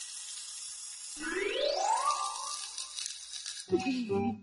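Soundtrack effect of snacks sizzling on a charcoal grill: a steady high hiss. About a second in, a rising sliding tone joins it, then fades out shortly before the end.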